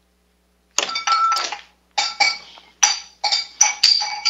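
Clatter and glassy clinks as a sprung broom knocks a cardboard square out from under a ball, which drops into a glass beaker. The sharp clinks start about a second in and keep coming over the next three seconds, ringing briefly after each.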